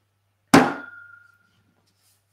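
A glass whisky bottle, Nikka Taketsuru Pure Malt, set down on the coffee table: one knock about half a second in, followed by a short, clear glassy ring that fades within a second.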